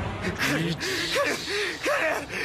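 A man's voice in short, strained gasps, several in quick succession, from an anime soundtrack.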